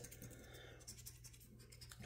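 Faint scratching of a scratch-off lottery ticket's coating being rubbed away, a run of quick light strokes.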